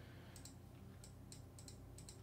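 Near silence with several faint, short clicks of a computer mouse and keyboard scattered through, over a low steady room hum.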